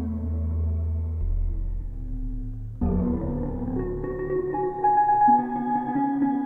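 Moog Matriarch analog synthesizer holding sustained chords over a deep bass note, run through a phaser pedal with shimmer reverb added. A new, brighter chord enters about three seconds in, and higher held notes join soon after.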